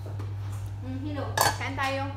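Cutlery and plates clinking at a meal table, with one sharp clink about one and a half seconds in, over a steady low hum.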